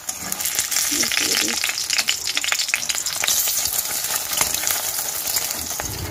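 An egg frying in hot oil in an aluminium wok, sizzling with dense crackling and spitting, while a spatula works in the pan. The sizzle cuts off suddenly near the end.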